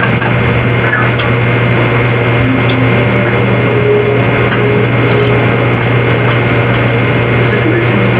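A steady, loud drone: a constant low hum under a dense, even noise, with no breaks or changes.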